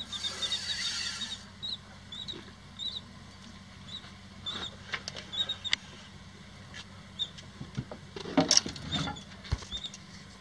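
A spinning reel is cranked against a hooked redfish, giving small high squeaks and clicks every half second or so. A louder splash comes about eight and a half seconds in as the fish nears the surface.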